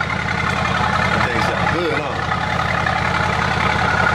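Mercedes-AMG GT's twin-turbo V8 idling at the exhaust with a steady low burble.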